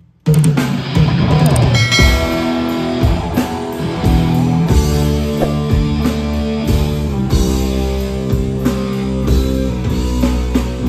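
Heavy metal band playing live: electric guitars, bass guitar and drum kit crash in all at once about a quarter-second in, opening the song with a heavy riff.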